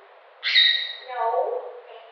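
A pet conure's short, high call starts sharply about half a second in and slides slightly down, followed by a lower call that falls in pitch.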